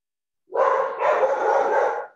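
A dog barking, heard over a video call. It starts about half a second in and runs for about a second and a half.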